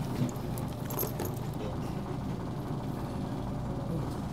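Steady low background hum of an indoor room, with a few faint light clinks in the first second or so.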